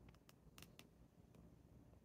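Near silence, broken by about five faint small clicks in the first second and a half as a wooden fountain pen is handled and put back together.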